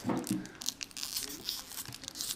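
Foil trading-card booster pack crinkling and tearing as it is pulled open by hand, a quick run of small crackles.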